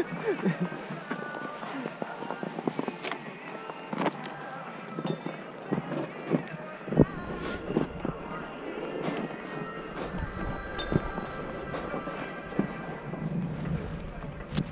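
Ski-slope background of faint distant voices and music, with scattered short knocks and scrapes close to the camera.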